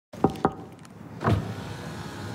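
Sounds of a car's side window being opened: two quick knocks about a quarter and half a second in, then another about a second later, over a low steady hum.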